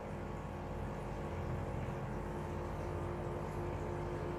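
Steady low hum of a small motor, with faint constant tones and no change throughout.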